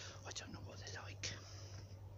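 A man muttering and whispering quietly under his breath, with faint mouth and breath sounds over a steady low hum.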